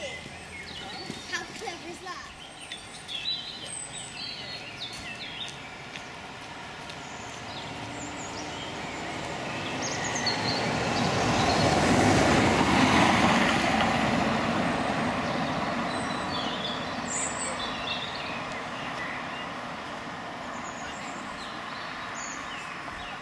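Distant steam locomotive approaching, heard as a rushing roar that swells to a peak about twelve seconds in and then slowly fades, with birds chirping over it.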